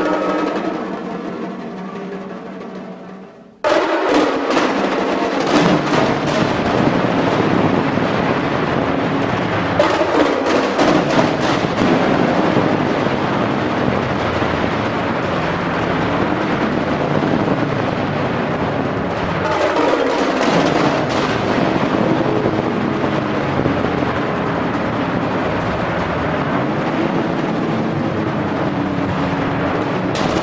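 Live percussion ensemble playing on mallet keyboard instruments, timpani and drums. A ringing chord dies away over the first few seconds, then the full ensemble comes in suddenly and loud about four seconds in, with fast rolls and sharp strokes.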